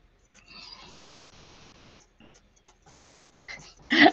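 A soft breath out close to the microphone about half a second in, fading over a second and a half, then a short intake of breath near the end.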